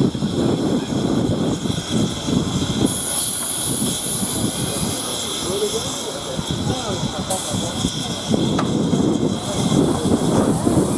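Krauss 0-4-0 narrow-gauge steam locomotive hissing steam as it moves off slowly with its train. A higher hiss joins for a few seconds in the middle, over irregular low rumbling, with voices nearby.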